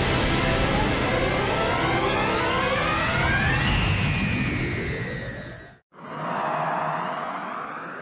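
Dramatic score and regeneration sound effect from the episode, a dense cluster of tones sliding upward, cut off abruptly a little under six seconds in. Then a whooshing transition effect swells and fades away.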